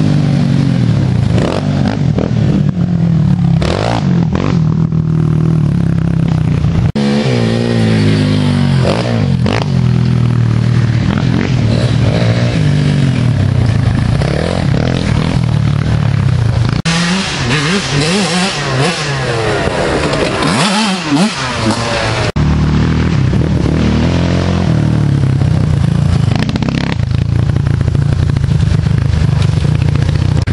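Youth race quad (ATV) engines running hard on a dirt trail, their pitch rising and falling with the throttle as riders come through. Several quads are heard in turn.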